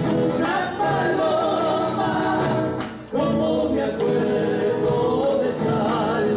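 Three male voices singing an Argentine folk song in harmony over strummed acoustic guitars, with a brief pause between phrases about three seconds in.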